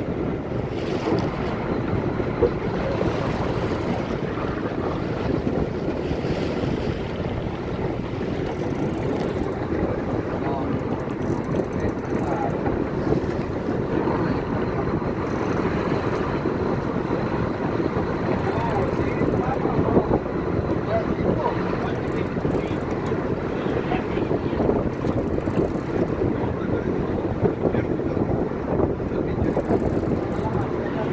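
Steady wind noise on the microphone over a boat's engine running and the sea washing along the hull.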